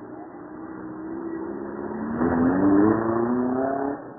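Suzuki engine of a 1946 Morris street rod accelerating past, its pitch rising steadily and loudest two to three seconds in. The engine note drops off sharply near the end.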